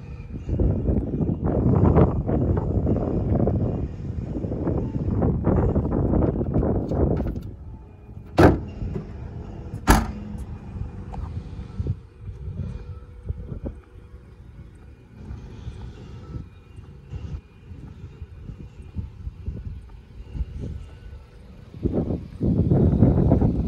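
Boot lid of a Toyota Vios sedan being shut: two sharp slams about a second and a half apart, after several seconds of loud low rumbling noise.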